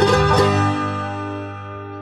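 Bluegrass band of banjo, guitar, mandolin, fiddle and upright bass ending an instrumental: the last quick picked notes stop about half a second in, and the final chord rings out and fades away.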